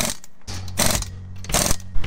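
Pneumatic impact wrench working a car wheel's lug nuts in three short bursts about 0.8 s apart, over a steady low hum.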